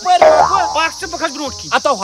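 Men's voices in a lively back-and-forth exchange, over a steady high-pitched insect chorus.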